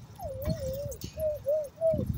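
A person whistling: one long wavering note, then three short notes. Low wind rumble on the microphone from riding.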